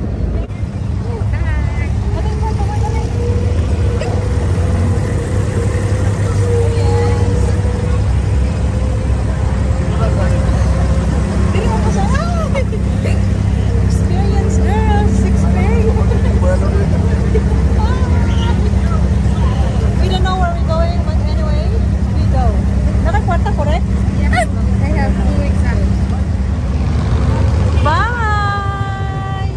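Wooden abra water taxi's inboard diesel engine running with a steady low drone, under scattered passenger chatter.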